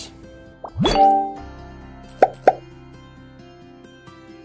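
Cartoon-style message-bubble sound effects: a rising plop about a second in, then two short pops a quarter-second apart a little after two seconds, over soft background music.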